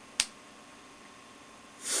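Low, steady hum of a home recording microphone, broken about a quarter second in by one short, sharp puff of breath against the mic. Near the end a breath is drawn just before a voice begins.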